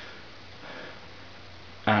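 A faint sniff through the nose a little under a second in, over low steady hiss; a spoken word begins right at the end.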